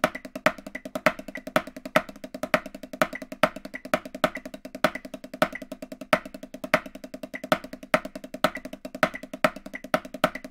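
Snare drum played with wooden sticks: a fast, unbroken stream of strokes in a swung triplet feel, with louder accented notes standing out among softer ones.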